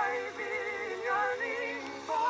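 Song from a 1920 record: a woman singing with a chorus, the voices held on notes with a wavering vibrato.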